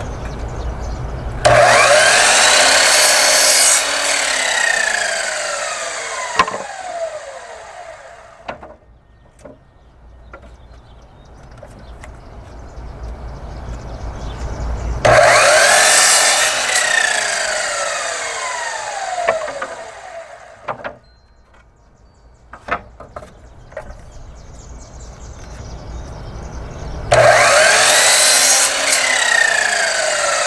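Compound miter saw cutting through pallet boards three times, about twelve seconds apart. Each cut is a loud, sudden burst of the blade biting wood, followed by a falling whine as the blade spins down.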